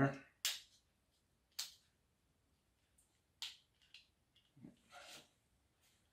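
Rubber band being stretched and hooked over the arm of a 3D-printed plastic paper-plane launcher: three sharp snaps in the first three and a half seconds, then a few softer handling clicks.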